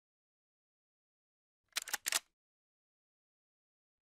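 Silence broken about two seconds in by a brief burst of four or five sharp clicks lasting about half a second.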